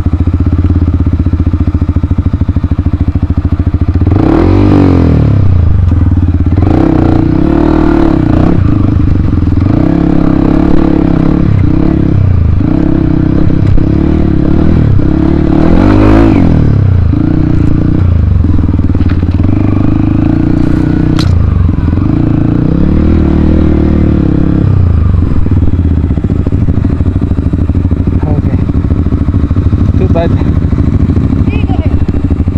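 Yamaha WR155R dirt bike's single-cylinder four-stroke engine running steadily at first, then revved up and down again and again as the bike is ridden over rough ground, settling to a steadier note near the end. Occasional clatter and knocks are heard over the engine.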